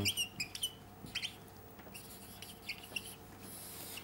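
Felt-tip marker squeaking on a whiteboard in short strokes as a word is written and underlined.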